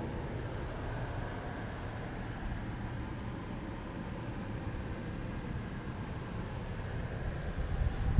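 Steady, even background hiss inside an SUV's cabin, with no distinct events.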